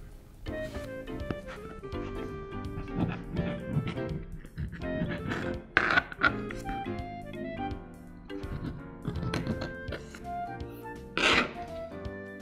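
Light instrumental background music made of short, bright notes. A few soft thunks of a plastic play knife pressing through modelling dough onto the cutting mat, the loudest about eleven seconds in.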